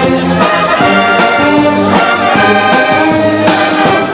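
Brass band playing a tune, with brass instruments carrying sustained melody notes.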